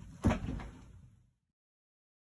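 A single thump a quarter of a second in, trailing off over about a second, then dead silence as the sound track cuts out.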